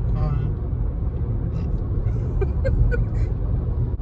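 Steady low road and engine rumble inside a moving car's cabin. A brief bit of speech comes just at the start and faint scattered voice sounds follow.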